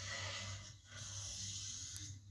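Felt-tip pen drawing two long lines across paper: two steady strokes with a brief break a little under a second in. Heard through a television's speaker over a low hum.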